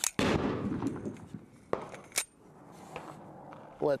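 Gunshots: a loud report about a quarter-second in that rings on for most of a second, then two sharper cracks around two seconds in.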